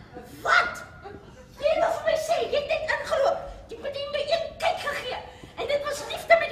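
Actors speaking on stage, with some chuckling; a short sound about half a second in, then continuous talk from under two seconds in.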